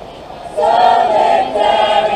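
A group of people singing together in chorus. The voices come in about half a second in and hold long, sustained notes.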